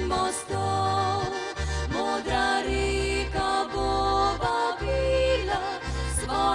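Instrumental folk-pop passage led by a piano accordion playing the melody over sustained chords, with acoustic guitar and a bass line moving note by note underneath.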